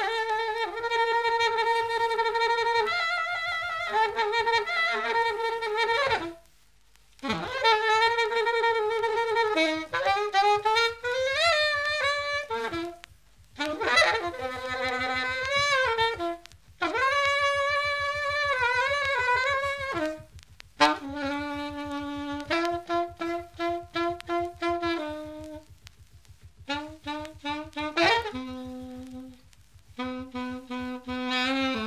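Grafton plastic alto saxophone playing a single free-jazz line: long held notes at first, then phrases with pitch bends and short repeated notes, broken by brief pauses.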